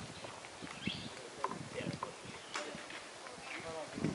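Faint voices with scattered light clicks and taps, and a brief high chirp about a second in.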